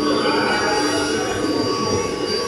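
Industrial rotary kiln in operation: a loud, steady machine noise with several held tones over a constant rushing sound.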